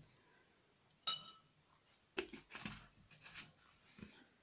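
Small hard craft items handled on a cloth-covered work table: a sharp clink with a brief ring about a second in, then a cluster of light knocks and rustles.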